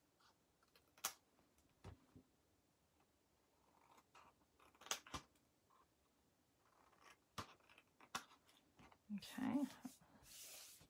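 Small craft scissors snipping cardstock: a handful of sharp, short snips spaced apart, as little pieces are trimmed off the tabs of a scored box bottom to cut down bulk at the glued corners.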